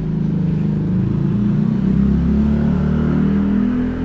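A motor scooter passing close by, its engine note rising slightly in pitch and strongest around two to three seconds in.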